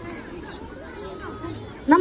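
Quiet background chatter of voices. Just before the end, a child starts speaking loudly into a microphone over the loudspeakers.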